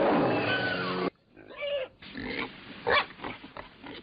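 Warthog squealing: one loud, strained squeal lasting about a second that cuts off suddenly, followed by several shorter squeals and grunts.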